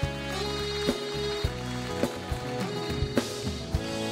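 Instrumental break in a band arrangement: a piano accordion plays sustained melody notes over bass and a steady drum beat.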